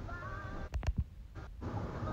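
Audio of a dash cam recording played back on a phone while it is scrubbed forward: steady in-car road noise with faint music, broken by two sharp clicks a little before the middle and a brief dropout as the playback jumps.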